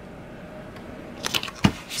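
Hands handling a vinyl scrap on a plastic cutting mat: quiet at first, then a few light clicks and taps just past halfway, the sharpest one near the end.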